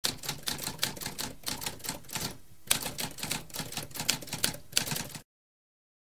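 Typewriter typing: a quick, uneven run of key strikes, several a second, with a brief pause about halfway through, stopping abruptly about five seconds in.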